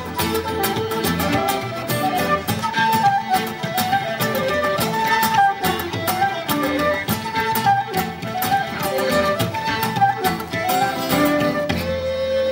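Irish traditional band playing a fast tune live: a quick fiddle-led melody over strummed guitar, with a steady beat of drum strokes from the bodhrán.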